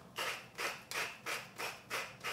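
A hand-turned salt or pepper grinder being twisted over a bowl of eggs. It gives a short gritty grinding burst with each twist, about three a second and evenly spaced.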